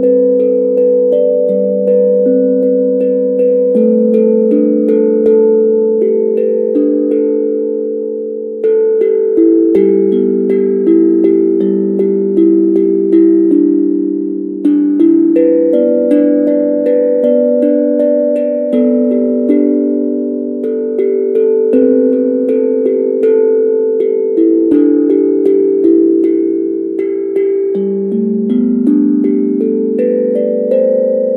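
Steel tongue drum struck with two mallets, playing a slow melody: each note rings on and overlaps the next, with the phrases briefly thinning out about a third and halfway through.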